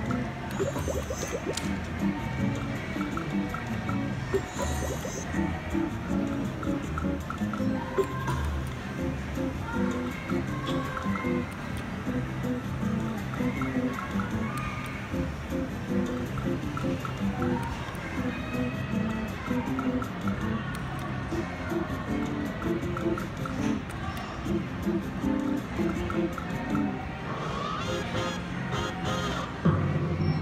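WMS Gold Fish video slot machine playing its electronic game music and reel-spin sound effects as the reels spin. Near the end a run of sharp, brighter clicks and chimes comes in as the bonus is triggered.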